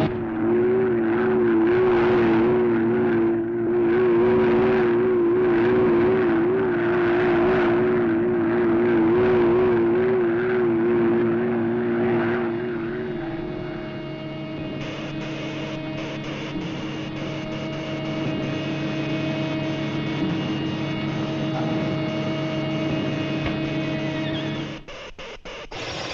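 Cartoon sound effect of a giant flying robot: a mechanical drone with a warbling tone over noise that swells and fades about once a second. About halfway through it settles into a steadier hum with faint regular clicking.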